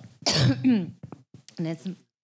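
A short, rough vocal burst from a person, starting about a quarter second in, then a brief voiced sound near the end.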